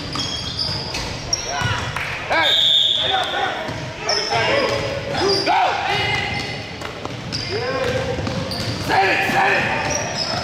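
A basketball being dribbled on a hardwood gym floor, with sneakers squeaking and players and spectators shouting, all echoing in a large gym.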